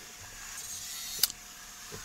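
Handheld angle grinder lifted out of a cut through steel square tubing and running free without load, a quiet motor hum, with one sharp click a little over a second in.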